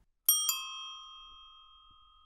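A small metal bell struck twice in quick succession, a quarter second apart, then ringing out and fading over about a second and a half.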